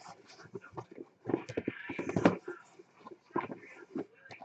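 Cardboard card boxes being handled and set down on a stack: a run of irregular light knocks and rustles, busiest in the middle.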